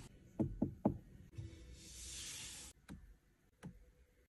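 Car seat belt being fastened: three short clicks as the tongue is pushed into and latches in the buckle. A brief soft hiss and two fainter clicks follow.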